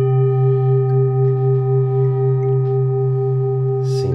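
Large metal Tibetan singing bowl ringing on after being struck: a deep, steady hum with several higher overtones above it, pulsing slightly in loudness.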